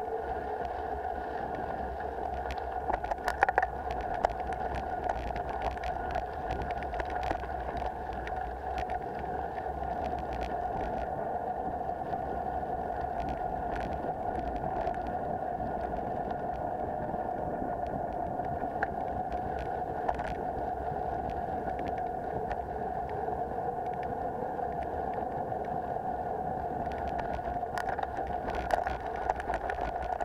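Ride noise of a mountain bike on a dirt trail heard from a camera on the bike or rider: a steady rushing hum of tyres and wind, with scattered rattles and knocks from bumps, the loudest about three and a half seconds in and near the end.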